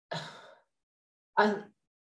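A woman's short breathy sigh just as she pauses in thought, followed about a second and a half in by a brief spoken 'I'.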